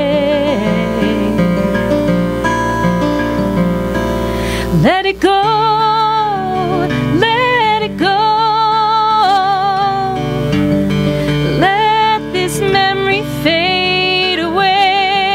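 A woman singing a slow song with acoustic guitar accompaniment. A held note with vibrato ends just after the start, the guitar plays alone for about four seconds, then the voice comes back in with sung phrases about five seconds in.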